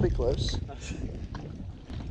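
Low rumble of wind buffeting the microphone over open water, with a brief unclear voice near the start.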